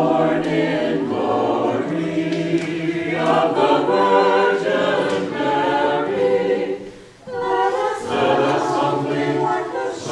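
Mixed church choir of men and women singing a Christmas carol together, with a brief break between phrases about seven seconds in.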